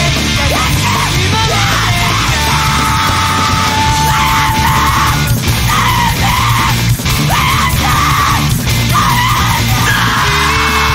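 Chaotic emo (screamo) band playing loud, heavy-bottomed rock, with screamed vocals over the band. A high note is held for a couple of seconds a few seconds in.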